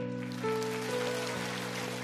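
Soft background music of sustained chords, one note shifting about half a second in and again at one second, over a steady hiss.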